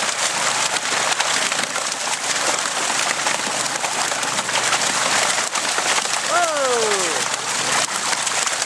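Water pouring down a metal fish-stocking chute with live rainbow trout, a steady loud rush of splashing water. About six seconds in, a short falling voice-like cry.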